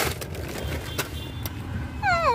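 Steady low rumble of a car heard from inside the cabin while it is being driven, with a few short knocks from the phone being handled.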